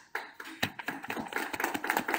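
A small audience applauding: many quick, irregular hand claps.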